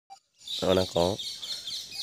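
Birds chirping continuously in high, quick notes, with a man's voice saying a couple of syllables about half a second in.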